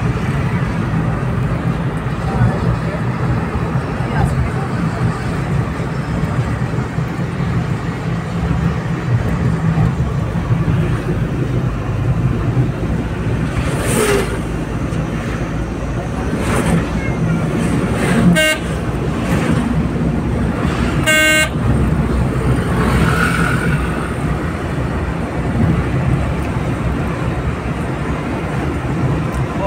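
Steady engine and road rumble heard from inside a moving vehicle on a highway. Two short vehicle-horn honks come about two thirds of the way through, the second a little longer than the first.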